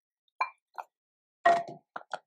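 Chunks of raw pumpkin dropped off a plate with a wooden spoon, landing with short soft plops on raw rice and diced carrot in a rice cooker's inner pot. There are four separate drops, and the third, about one and a half seconds in, is the loudest and longest.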